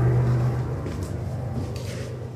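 Steady low engine rumble from distant traffic outside, strongest at the start and fading after the first second.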